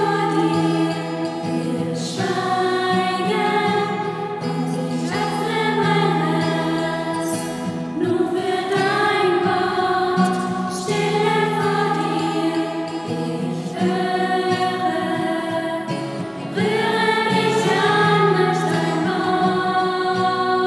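Small women's choir singing together in phrases of held notes, a new phrase starting every few seconds.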